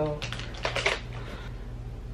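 A quick cluster of small plastic clicks and rattles from a stick concealer's cap being worked open and handled, over a low steady hum.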